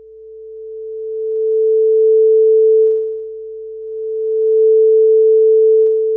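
Ableton Live's audio test tone, one steady pure pitch, growing much louder over the first two seconds as its test volume is dragged up, then dropping back about halfway through and swelling loud again. It confirms that the program is sending sound to the sound card.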